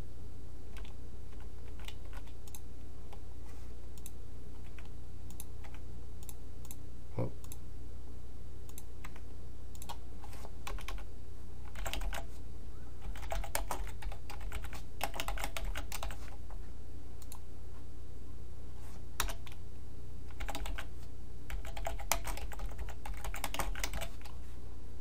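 Typing on a computer keyboard: a few scattered keystrokes at first, then quicker runs of typing in the second half, over a steady low hum.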